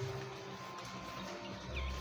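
Faint steady hum from the small battery blower fan that keeps an inflatable dinosaur costume inflated.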